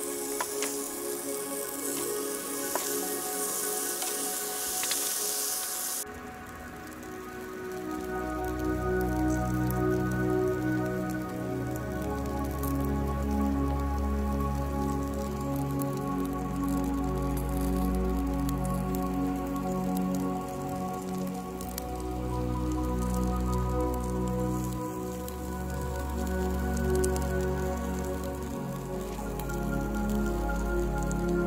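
Sauced pork ribs sizzling on a hot charcoal grill grate: a high hiss with crackles that cuts off suddenly about six seconds in. Background music plays throughout, with a bass line coming in a couple of seconds after the sizzle stops.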